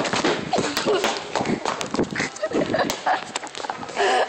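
Close handling noise of a phone: hands rubbing and knocking on it while it is carried about hurriedly, with many sharp knocks and short bursts of voice.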